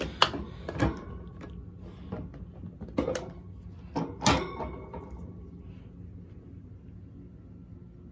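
A mesh insect-rearing cage and its plastic lid being handled and opened: a few sharp knocks and clicks in the first half, the loudest a little after four seconds, over a faint steady low hum.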